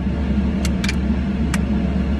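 Plastic screw cap of a drink bottle being twisted open, giving a few short sharp clicks as the seal breaks, over the steady low hum of a car idling.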